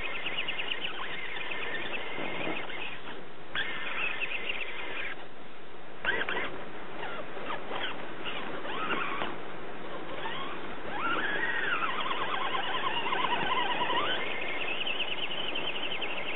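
Electric drive motor and gears of a 1:10 Axial AX10 rock crawler whining as it claws up a sandy bank. The pitch rises and falls with the throttle, dropping away briefly a few times.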